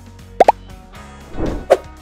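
Animated-logo sound effects over a bed of background music: a string of short cartoon pops. One comes right at the start, a quick pair about half a second in, and two more in the last half second.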